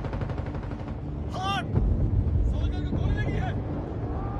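Rapid automatic gunfire of a film battle scene, starting suddenly, with a heavy low rumble that swells about two seconds in and brief shouted voices over it.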